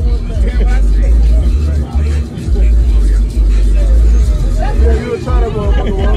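A loud, deep rumble that steps between low pitches, with men's voices talking over it, most clearly near the end.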